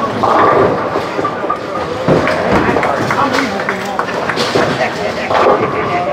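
Bowling alley din: people talking over one another, with a couple of sharp thuds and the rumble of bowling balls on the lanes.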